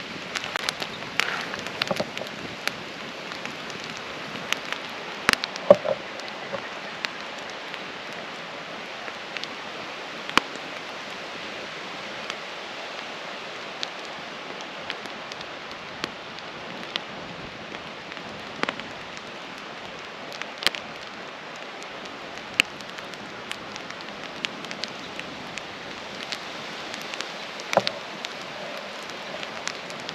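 Wood campfire crackling: sharp pops at irregular intervals over a steady hiss.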